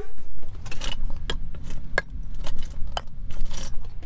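Empty Bath & Body Works three-wick candle jars, glass with metal lids, clinking and knocking together as they are gathered and set down on a table: several sharp clinks over a low rumble of handling.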